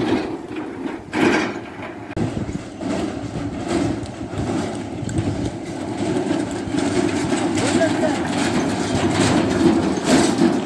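Bullock cart rolling along a paved road, its spoked wheels and cart body rattling steadily as the oxen pull it.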